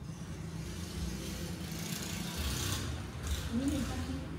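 A road vehicle passing by, its noise swelling over a second or two to a peak past the middle and then fading, over a steady low hum.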